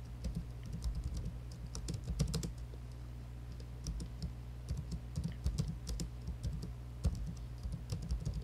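Typing on a computer keyboard: irregular runs of quick keystrokes with short pauses between words, over a steady low hum.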